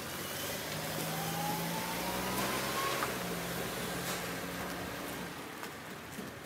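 A road vehicle driving past with its engine running, a thin whine rising in pitch for about two seconds and then cutting off. The sound grows a little louder midway and eases off near the end.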